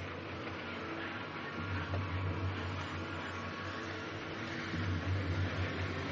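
A moving passenger train heard from inside its corridor: a steady rumble and hiss, with a deep hum that swells twice.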